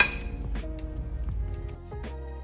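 A metal serving spoon clinks once against a ceramic plate right at the start, ringing briefly, over background music.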